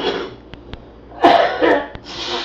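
A man coughing: a short burst at the start, then two loud coughs in quick succession a little past halfway.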